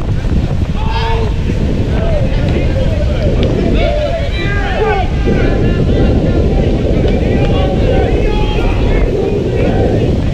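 Wind buffeting the microphone, loud and steady throughout. Over it come short, distant shouted calls of several voices from a football pitch.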